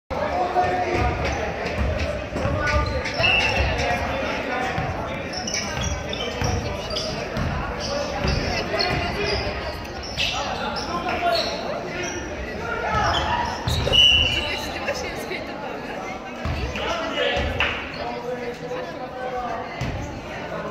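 A basketball bouncing on a wooden gym floor, repeated low knocks echoing in a large sports hall, under the voices of players and spectators. A brief high squeak comes about three seconds in and again at about fourteen seconds, the second at the loudest moment.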